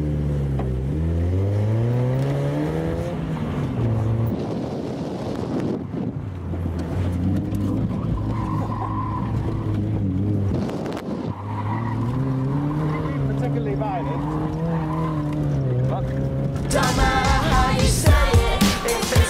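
Mazda MX-5's four-cylinder engine heard from inside the open car, revving up and easing off in turn as it is driven hard around a coned course. Music comes in near the end.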